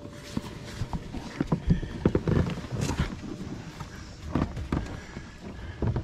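Livewell pump-out pumps on a bass boat running after being switched on to empty both livewells into the lake, with irregular knocks and thumps over them.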